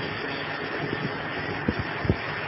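Steady background hiss and room noise of a lecture recording, with a few faint soft knocks in the second half.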